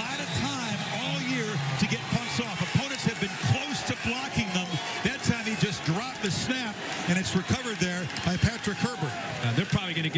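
Men's voices talking over a stadium crowd's background noise, with scattered sharp knocks.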